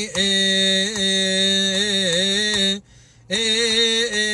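A solo male cantor chanting a Coptic Orthodox hymn unaccompanied, holding long drawn-out notes that waver and bend slowly in pitch. He stops briefly for a breath about three seconds in, then carries on.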